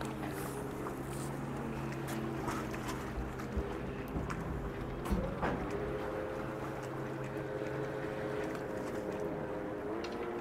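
A boat motor running at low speed with a steady hum, its pitch stepping up slightly about five seconds in.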